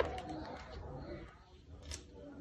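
Pages of a picture book being handled and opened out, with a click at the start and another near the end. A bird calls faintly in the background.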